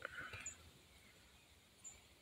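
Near silence, with two brief, very high chirps from a small bird, one about half a second in and one near the end.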